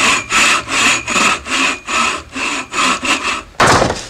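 Quick back-and-forth rasping strokes, about three a second, like a hand saw cutting through wood. The run ends in one longer, louder stroke near the end.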